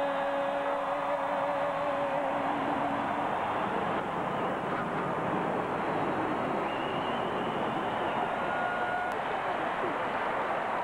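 Marine Corps F/A-18 Hornet jets flying over in a four-ship formation, a steady jet roar blended with a cheering crowd. A held musical note fades out about three seconds in, and short whistles rise from the crowd near the end.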